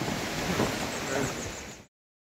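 Steady rushing noise of a river flowing below a suspension bridge, with no distinct events in it. It cuts off abruptly to silence just before the end.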